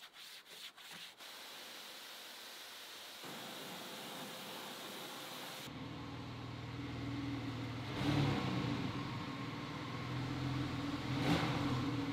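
Detailing brush scrubbing foam in quick strokes for about a second, then a steady hiss. From about halfway a Porsche 911 Carrera 4 GTS flat-six engine runs with a low steady note, swelling twice near the end before cutting off.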